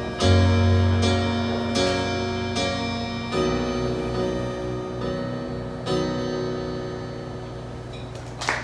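Electronic keyboard in a piano voice playing the song's closing chords: about five chords struck, the last about six seconds in, each left to ring and die away.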